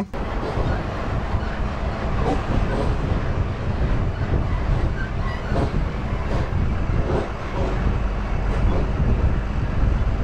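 Tata Prima 5530 tractor-trailer truck driving along a rough dirt road: a steady low engine and road rumble with faint irregular rattles and clunks over it.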